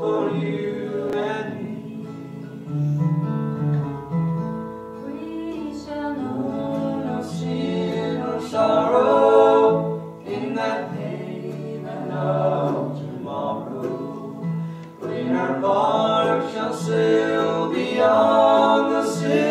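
Several voices singing a slow song over instrumental accompaniment, with long-held low notes underneath.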